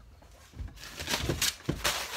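Rustling and scraping of plastic being handled, with a few sharp clicks, starting just under a second in. This is the handling of a plastic epoxy bottle and its wrapping as the resin is readied for measuring.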